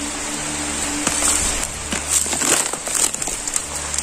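A short-handled hoe chopping into soft, damp soil several times, each blow a dull thud with loose earth crumbling, as a snake burrow is dug open.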